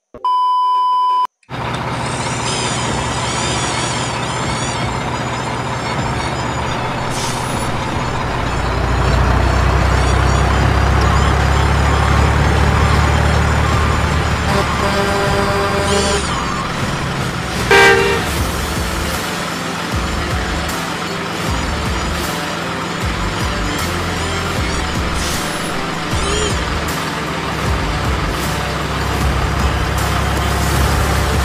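A steady high test-tone beep lasting about a second, then a dense mix of truck engine noise with a deep rumble and background music. Horn toots sound in the middle of the mix, the loudest about 18 seconds in.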